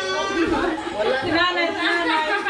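Several voices chattering and laughing over one another.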